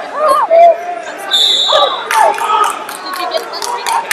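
Men shouting over the murmur of a large wrestling hall, with one short, high whistle blast about a second and a half in.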